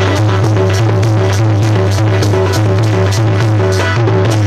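Instrumental passage of devotional zikir music: tabla-style hand drums keep a fast, even beat over a repeating keyboard melody and a steady low drone.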